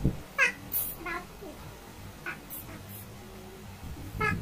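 A cat meowing: two short meows in the first second or so, then a few fainter calls.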